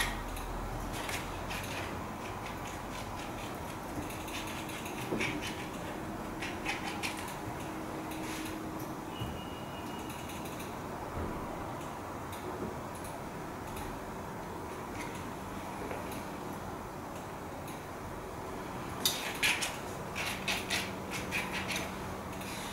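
Metal painting knife scraping and tapping as acrylic paint is picked up from a palette plate and dabbed onto paper, with scattered small clicks. A cluster of sharp metal clicks comes near the end as the knives are handled. Steady room noise sits underneath.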